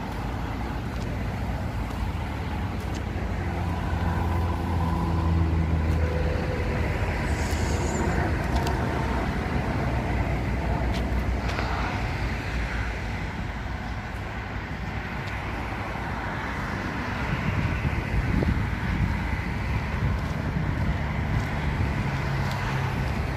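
Steady road-traffic rumble from passing vehicles, with a heavier engine hum swelling about four to seven seconds in.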